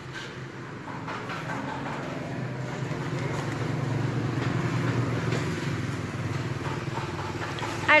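A motor vehicle's engine running steadily, growing louder toward the middle and easing off again, with faint voices in the background. A voice starts speaking right at the end.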